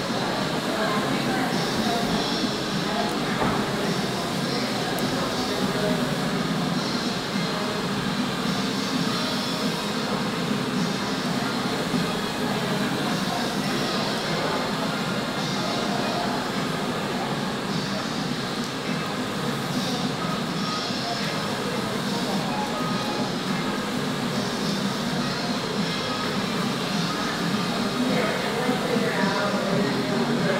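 Steady background noise with indistinct voices under it, at an even level throughout.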